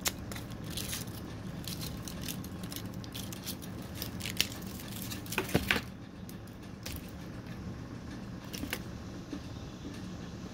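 Scattered clicks and crinkles of a dark chocolate bar and its wrapper being handled, loudest in a short cluster about five and a half seconds in, then fewer and quieter.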